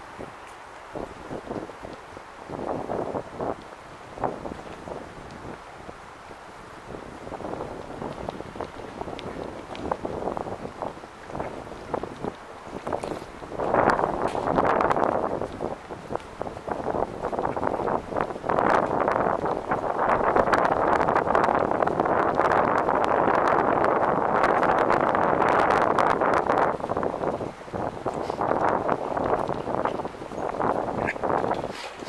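Wind rushing and buffeting over the camera microphone. It comes in gusts at first, then grows loud and nearly steady through the second half.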